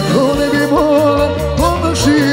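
Live band dance music in folk style: a wavering, bending melody line over a steady pulsing bass beat.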